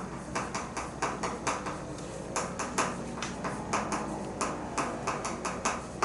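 Chalk writing on a chalkboard: an irregular run of short, sharp taps and clicks, about five a second, as characters are written.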